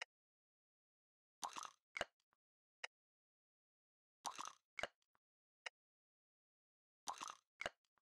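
Faint, sparse lo-fi hip-hop drum loop playing back: a longer noisy hit followed by two or three short clicky hits, with silence between them, the pattern repeating about every three seconds.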